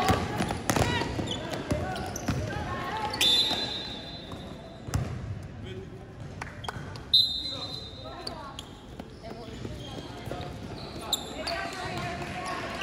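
Referee's whistle blown twice, a held blast about three seconds in and a shorter, louder one about seven seconds in, stopping play in a basketball game. A basketball bounces on the wood court around them.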